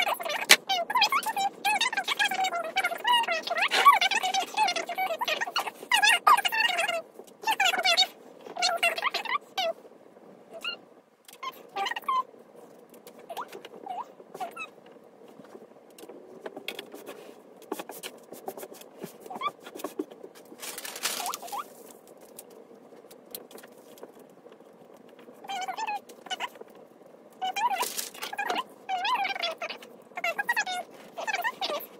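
Fabric shears cutting through linen in quick runs of snips with squeaky blade strokes, busiest in the first third. Then the cloth is handled and smoothed on the table, with a short rustle about two-thirds of the way through.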